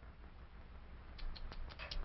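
Background noise of an old film soundtrack: a steady low hum and faint hiss. In the second half comes a quick run of small clicks.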